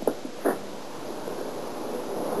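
A small garden firework burning with a steady fizzing hiss, after a short burst about half a second in, on old camcorder audio.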